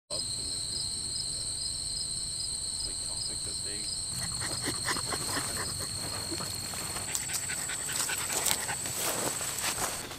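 Insects trilling steadily in tall grass, a high thin sound with a faint regular pulse. About halfway in, a dog on a leash starts rustling through the grass and panting.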